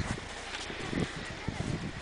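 A few uneven footsteps in deep snow, soft low thumps spaced irregularly.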